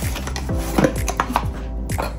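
A paperboard retail box for a DJI Osmo Pocket 3 being opened and handled, with an inner box slid out: several sharp clicks and taps of card, the loudest near the middle. Background music with a steady beat plays underneath.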